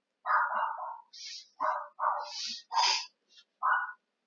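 An animal calling, about six short calls in quick succession.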